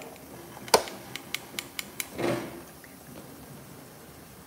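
One sharp knock, then a quick run of about five short clicks over the next second, and a brief low sound just after two seconds in.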